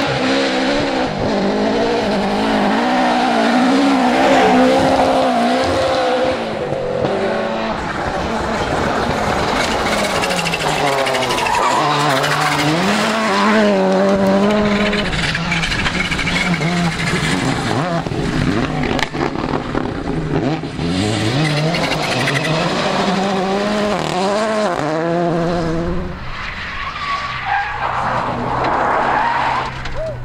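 Rally car engines revving hard on gravel stages, one car after another, the engine pitch repeatedly climbing and dropping with gear changes and lifts. Loose gravel and tyre noise lie under the engines.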